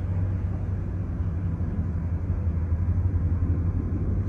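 A steady low rumble with a constant low hum and no distinct events.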